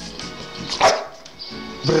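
American Staffordshire terrier giving one short, sharp bark about a second in, a begging bark for a dental chew treat held in front of her.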